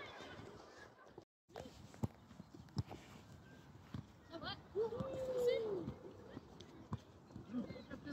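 Children calling out during a small-sided football game on grass, with one long drawn-out shout about five seconds in, the loudest sound. Several sharp thuds of a football being kicked are scattered through the game, and the sound drops out briefly about a second in.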